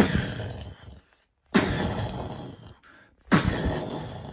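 Three sudden loud impacts, about a second and a half to two seconds apart, each dying away over about a second.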